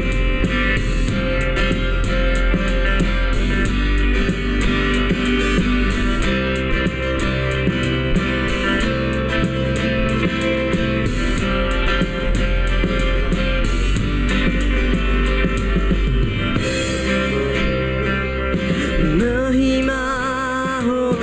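Worship band playing an instrumental passage on electric and acoustic guitars, electric bass and keyboard. A singer's voice comes in near the end.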